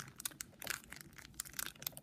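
A trading-card packet wrapper being crinkled and torn open by hand: a faint, irregular run of small crackles.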